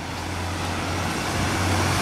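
Road traffic: a passing vehicle's engine and tyre noise, growing steadily louder.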